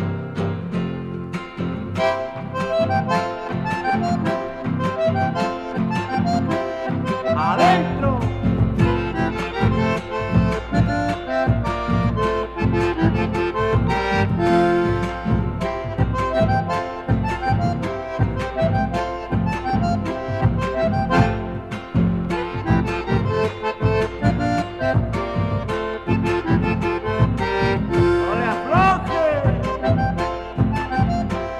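Instrumental folk music from an accordion-led ensemble, the accordion carrying the melody over guitar and a steady, even beat. Deeper bass notes join about eight seconds in.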